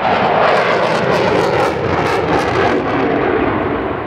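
Jet fighter flying overhead in a display: a loud, steady rush of jet engine noise that eases slightly near the end.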